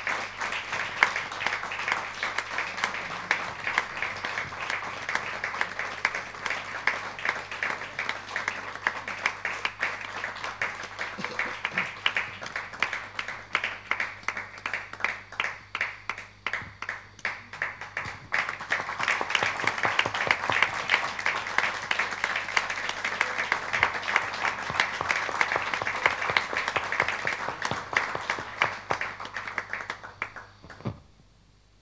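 An audience applauding: a dense, continuous round of clapping that thins out around the middle, swells again, and dies away at the end.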